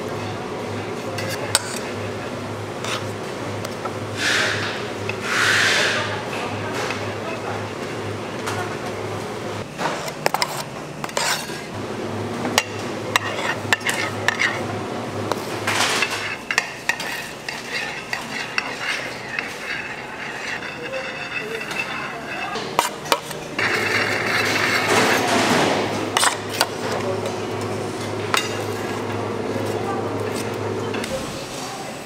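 Cake-icing work noise: metal spatulas and scrapers clinking and scraping against stainless bowls, trays and cake turntables, with scattered knocks and a few short scraping bursts. Under it runs a steady low hum that stops and starts.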